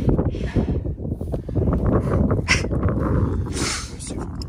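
Wind buffeting the microphone in a heavy, uneven rumble, with a couple of short scraping or crunching noises, one about two and a half seconds in and one near the end.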